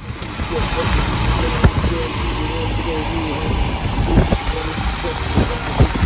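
Road and tyre noise heard inside a moving car on a wet highway: a steady low rumble with a hiss of tyres on wet pavement, and a few thumps along the way.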